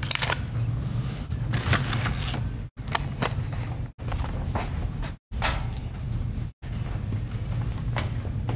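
Handling noise from carded diecast cars: light clicks and rustles of plastic blister packaging over a steady low hum. The sound cuts out completely four times, briefly, about every 1.3 seconds.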